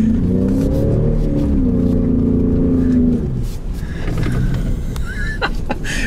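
2018 Ford Raptor's 3.5-litre twin-turbo EcoBoost V6 revving hard as the truck slides through a turn on loose dirt, its note rising and falling through the first three seconds, then going rougher and less even.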